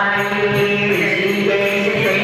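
Devotional chant music, voices singing a mantra-like melody with held notes over a light steady beat.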